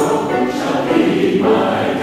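Mixed choir of men's and women's voices singing a carol together.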